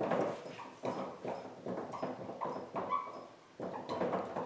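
Dry-erase marker writing on a whiteboard: a quick run of short scratching strokes, with a brief squeak about three seconds in.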